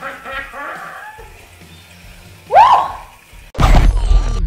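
A short laugh, then a loud swooping tone that rises and falls once. Near the end the loud start of the CollegeHumor logo sound sting cuts in suddenly.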